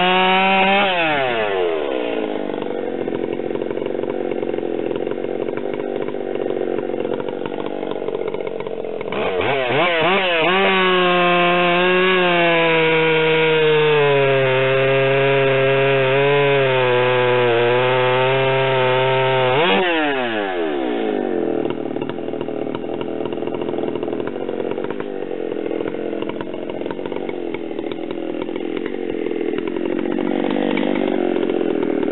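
Large Stihl chainsaw at full throttle cutting through a big log round. The engine note is pulled down under load in the cut, then climbs sharply twice, about a second in and again about two-thirds of the way through, as the chain frees up.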